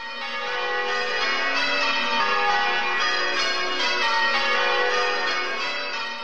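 A peal of bells ringing, many pitches sounding together, fading in over about the first second.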